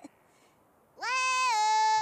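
A cartoon character's high-pitched vocal cry. It sweeps up sharply about a second in, drops a little, then is held long and steady on one note.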